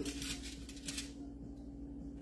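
Aluminium foil crinkling for about a second as a pizza is lifted off a foil-lined baking tray, then a faint steady hum.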